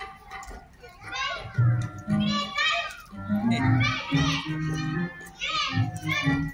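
Children's voices speaking on stage, with background music underneath.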